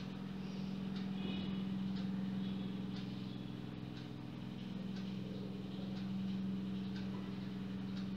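A steady low hum from a running appliance, with faint rustles and light taps of quilted fabric being handled and laid flat on a table.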